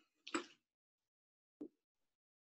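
Near silence, broken by two brief faint sounds: a short one about a third of a second in and a small tick near the end.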